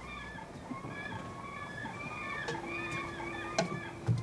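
Background poultry, chickens and geese, clucking and honking in many short calls. A steady low hum joins in about two and a half seconds in.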